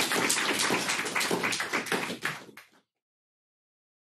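A small audience applauding with dense, irregular hand claps that cut off suddenly a little under three seconds in.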